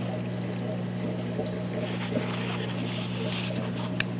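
Steady low hum of reef-aquarium equipment such as a pump, with a light haze of water and bubbling noise and small clicks over it.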